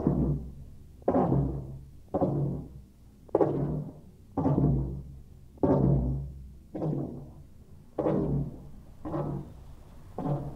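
Two floggers striking a padded table in turn, one hand after the other, in a slow four-point Florentine: nine heavy thuds about a second apart, each leaving a short low ring.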